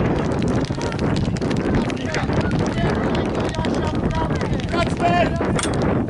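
Wind buffeting the microphone in a steady low rumble, with scattered knocks and high-pitched shouts from young players on the pitch, loudest about five seconds in.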